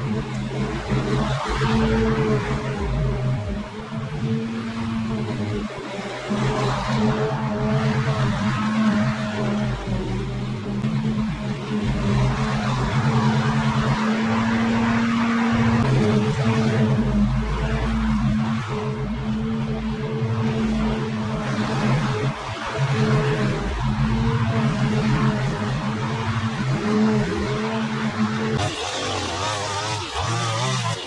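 Petrol push mower engine running steadily under load as it cuts grass. Near the end a higher-pitched line trimmer takes over.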